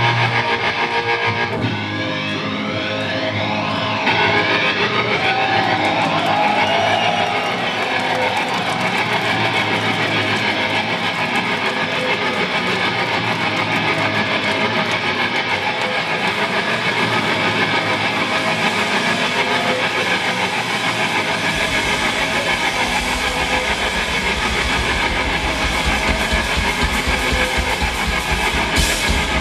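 Live noise punk played loud: distorted electric guitar through an amp fills the sound, then a heavy low end and rhythmic drum hits come in about three quarters of the way through.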